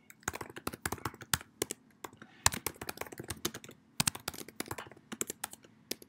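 Typing on a computer keyboard: a steady run of irregular key clicks, with a couple of louder strokes about two and a half and four seconds in.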